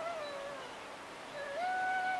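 Background music: a solo melody of held notes that slide from one pitch to the next. One note falls away near the start, and a new one rises and is held from about one and a half seconds in.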